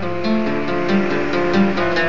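Steel-string acoustic guitar played solo, a steady picked pattern of notes over a repeating bass note.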